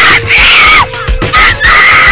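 A woman screaming: two long, high-pitched screams, the second starting about a second and a half in, over background music with a steady low beat.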